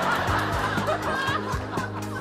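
Laughter at a joke's punchline over steady background music.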